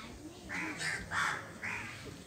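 A crow cawing three times in quick succession.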